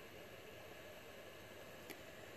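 Near silence: a faint steady hiss, with one small click near the end.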